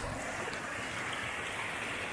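Steady rush of a shallow, rocky mountain river, water running over stones and out of the end of a sluice box set in the current.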